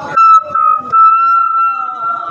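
A loud, steady, high-pitched whistling tone, held for about two seconds with a brief break near the start.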